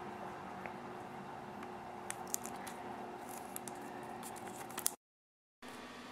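Faint handling noises: a few light clicks and rubs from hands on a Nexus 7 tablet over a steady low room hum, broken by a moment of dead silence about five seconds in.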